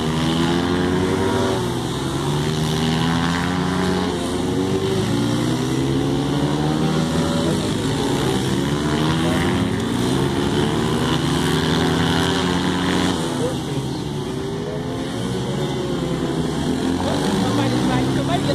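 Several small dirt-bike engines revving as riders circle a dirt oval, their overlapping pitches repeatedly rising and falling as they accelerate and ease off through the corners.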